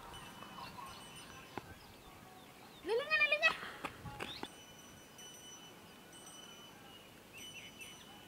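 A goat bleats once, a short quavering call about three seconds in, over quiet outdoor background with a faint steady high tone.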